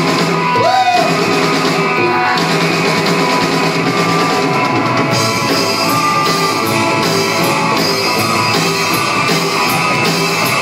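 Live rockabilly band playing loud: electric guitar through an amp, upright double bass and drum kit.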